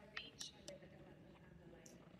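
Near silence: hall room tone, with a faint whisper of speech in the first half second.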